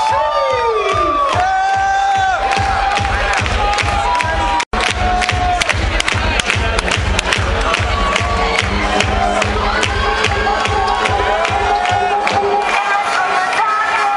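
Electronic dance music played loud over a club sound system, with a steady kick-drum beat, heard from inside the crowd, which shouts and cheers over it in the first few seconds. The sound cuts out completely for an instant about five seconds in, and the bass beat stops near the end.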